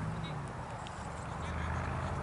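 Wind rumbling and buffeting on the camera microphone, a steady uneven low flutter, with faint distant voices.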